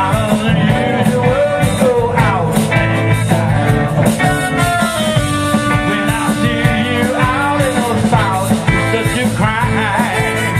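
Live rock band playing: electric guitars over bass and drums, amplified through the stage PA.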